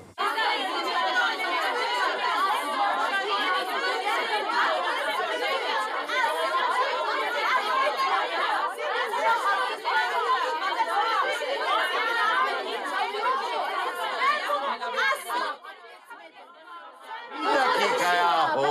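A group of women all talking and shouting over one another at once, an excited squabble. It dies down about two seconds before the end, when a single voice takes over.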